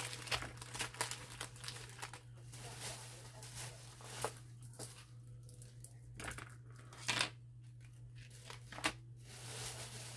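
Shopping bags and packaging crinkling and rustling as craft purchases are taken out, in irregular handling noises with a few sharper crackles, the loudest about seven seconds in, over a steady low hum.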